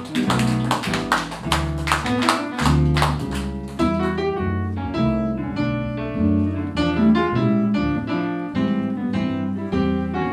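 Live small-group jazz, instrumental with no vocal: guitar playing a run of sharp strummed chords in the first few seconds, then single-note lines, over a walking double bass with piano and vibraphone accompaniment.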